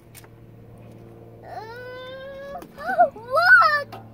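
A high-pitched whining cry: one long note, rising and then held for about a second, then two shorter whines that rise and fall in pitch.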